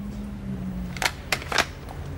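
Three short, sharp clicks, about a quarter second apart, starting about a second in, over a low steady hum.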